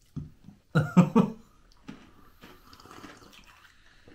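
A brief wordless vocal sound from a man, in short pitched bursts about a second in, then only faint low room noise.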